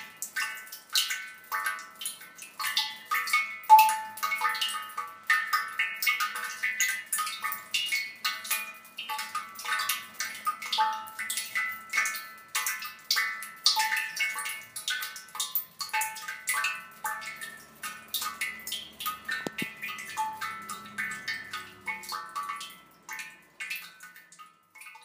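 Shigaraki-ware ceramic suikinkutsu (water koto): water drops fall into the hollow pot and each rings out a clear pitched tone. The drops come irregularly, several a second, and their ringing overlaps; one drop about four seconds in sounds louder than the rest.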